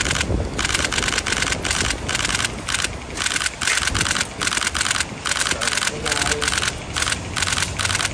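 Camera shutters firing in rapid bursts, a dense clatter that starts and stops over and over, with faint voices underneath.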